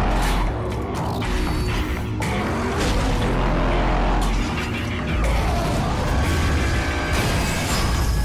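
Dramatic film-trailer music with a heavy low rumble, layered with explosion booms and mechanical sound effects; several sharp hits punctuate it.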